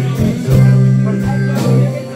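Live blues band playing, with electric guitars over bass and drums. A low note is held through most of the passage, and drum hits fall at a regular beat.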